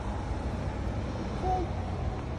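Steady low rumble of road traffic, with a short voice sound about one and a half seconds in.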